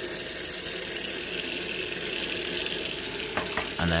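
Kitchen tap running in a steady stream into a stainless steel sink, a continuous hiss of water.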